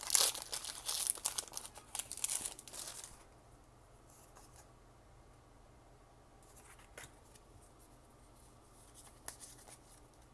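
Foil Pokémon booster-pack wrapper being torn open and crinkled for about three seconds, then quiet apart from a few faint clicks.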